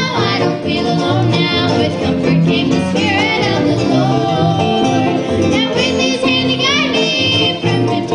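A bluegrass gospel band playing live: banjo, acoustic guitar, upright bass and keyboard, with voices singing over them.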